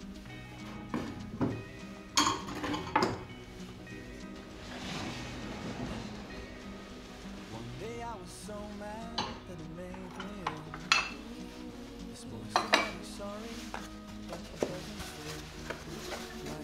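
Ceramic plates and bowls clinking against each other as they are lifted off shelves and stacked into a box: a few sharp clinks with brief ringing, a pair a couple of seconds in and another pair around eleven to thirteen seconds in. Soft background music plays throughout.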